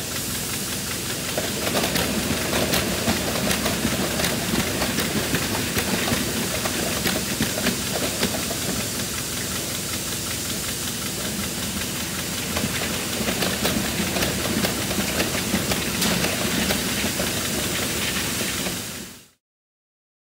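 Water and air rushing through the clear chamber of a milking system's milk meter during its wash cycle, a steady hiss over a low machine hum with scattered faint clicks. It cuts off suddenly near the end.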